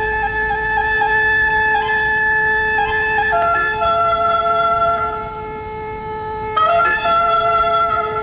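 Instrumental music: a woodwind playing a slow melody of long, held notes over a steady drone tone. The melody drops to a lower note about three seconds in and comes in again more strongly near seven seconds.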